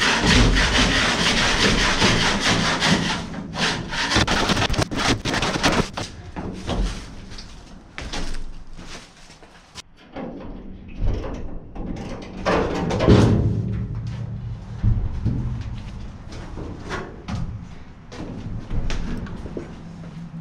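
Scraping and scuffing on the metal floor of a welded aluminum truck canopy as debris is cleared, loudest in the first few seconds. Then come irregular knocks, rubs and clatters as wooden boards are worked loose and pulled out.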